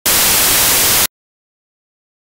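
A loud burst of static hiss lasting about a second, switching on and off abruptly.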